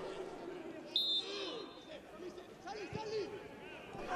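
Faint ambience of a football pitch in an empty stadium: distant voices from the players and bench. A short, high, steady tone is heard about a second in, and a dull thud near the end.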